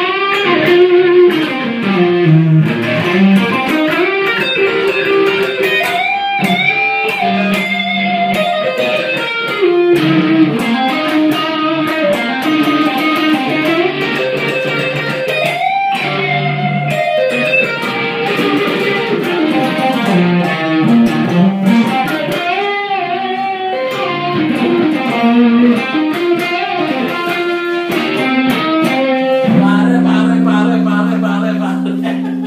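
Semi-hollow electric guitar playing a lead solo: quick runs of single notes with string bends and slides, broken by a few held low notes. A low chord rings out near the end.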